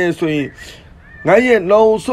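A man's voice speaking in long, sing-song phrases, with a short pause about half a second in.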